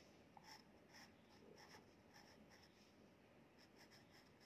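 Faint scratching of a pen writing on a paper book page, in a string of short strokes.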